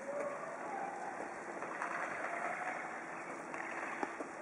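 Ice hockey game sounds on an indoor rink: a steady noise of skates on the ice and the hall's background, with a few faint distant shouts and light stick clicks.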